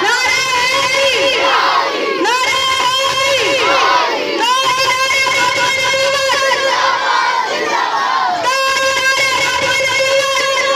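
A boy's voice amplified through a microphone and loudspeaker, declaiming at full force in long phrases with drawn-out vowels.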